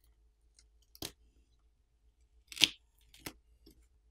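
A few brief clicks and scrapes of fingers handling the parts of an opened smartphone: one about a second in, a louder, slightly longer one past halfway, and a small one shortly after.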